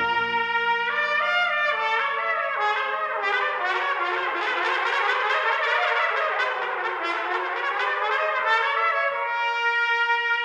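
Solo trumpet playing a free, unaccompanied cadenza-like passage: a held note, a climbing series of notes, then fast flourishing runs up and down, settling onto a long held note near the end. A soft low brass chord sustains under the first couple of seconds.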